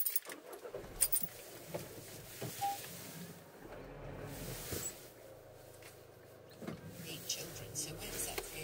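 Handling sounds inside a car being readied to move off: scattered clicks and knocks over a faint low rumble that comes and goes.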